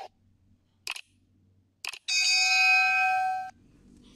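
Subscribe-button animation sound effect: two short mouse clicks about a second apart, then a bright notification-bell chime that rings for about a second and a half.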